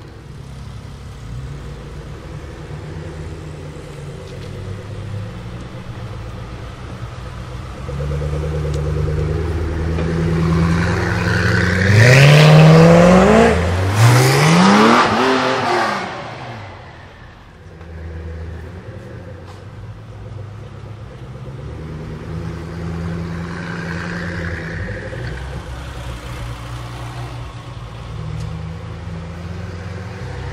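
Koenigsegg Agera RS's twin-turbo V8 running at low speed, then revved hard twice about twelve and fourteen seconds in, its pitch climbing quickly each time, before it drops back to steady low running as the car moves off in slow traffic.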